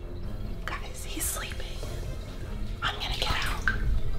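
A woman whispering a few words in two short bursts, over a low steady rumble.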